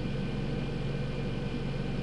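Steady low background hum with a faint thin whine above it, unchanging throughout.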